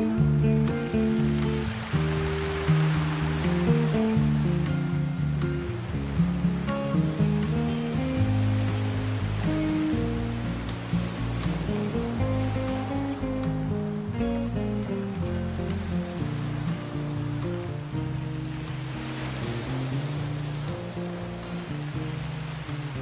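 Slow, soft classical guitar melody of plucked notes over the wash of ocean waves on a beach, with swells of surf about two seconds in and again near the end. The whole mix eases gradually quieter.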